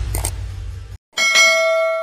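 A low rumble that cuts off abruptly about halfway through, then, after a short gap, a single bell-chime sound effect. It strikes sharply and rings on, fading slowly.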